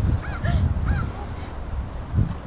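Three or four short honking bird calls, each rising then falling in pitch, about half a second apart in the first second, over low wind rumble on the microphone.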